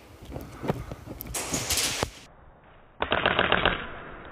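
Scattered sharp clicks and a short hissy rush, then about three seconds in a quick burst of full-auto airsoft rifle fire, a rapid string of shots lasting under a second.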